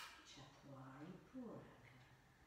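A woman's quiet voice, opening with a short breathy hiss, then one drawn-out spoken word: the instructor softly counting the next breath.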